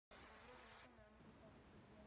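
Near silence: faint room tone, with a soft hiss during the first second.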